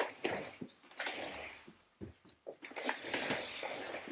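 Classroom furniture being moved by hand: an upholstered ottoman shoved across carpet, giving two longer scraping rustles about a second and three seconds in, with scattered knocks and clicks.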